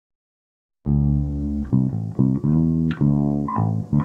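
Music starts about a second in: electric bass and guitar playing a line of separate plucked notes, each note struck and held about half a second.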